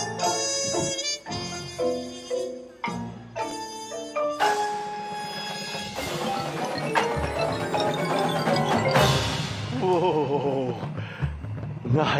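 Drum corps front-ensemble mallet keyboards, led by marimba, playing a run of quick struck notes. A few loud crashing hits from the percussion ensemble come through at intervals.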